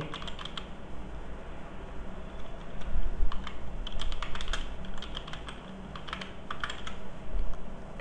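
Typing on a computer keyboard: several short runs of keystrokes with brief pauses between them.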